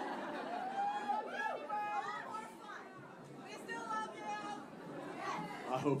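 Audience chatter in a large room: many voices talking at once, with a man's voice coming through near the end.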